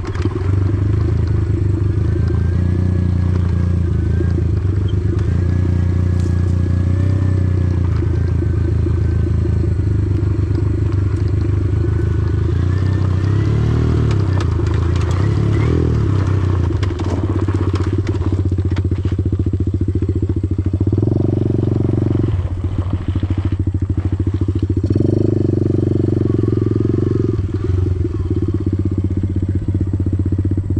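Small air-cooled four-stroke single-cylinder pit bike engine with an aftermarket full exhaust, running steadily at a low, even throttle as the bike rides a gravel dirt track. The throttle opens briefly twice in the second half.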